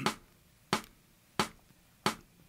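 Count-in before a slow play-along: three short, sharp percussive clicks, evenly spaced about 0.7 s apart, setting the tempo.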